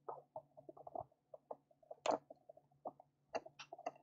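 Irregular small clicks and taps of plastic parts as a 1/18-scale RC crawler's body and chassis are handled while a small screw is fitted, over a faint steady low hum.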